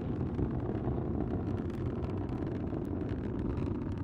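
Delta IV rocket in powered ascent, its RS-68 main engine and two strap-on solid rocket motors heard as a steady low rumble about 35 seconds into flight.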